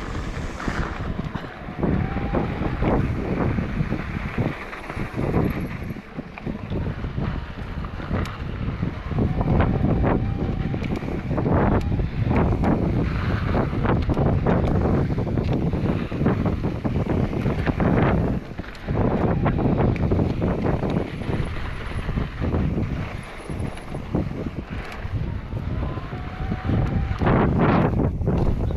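Wind buffeting the microphone over the rumble of an electric mountain bike's tyres rolling along a dirt trail, with frequent short knocks and rattles as the bike goes over bumps.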